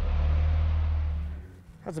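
A four-door Jeep's engine running low and steady as it crawls up a rock ledge. The sound fades out about one and a half seconds in, and a man's voice starts near the end.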